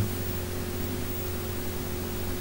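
Steady background hiss with a low, even hum underneath: room and recording noise with nothing else happening.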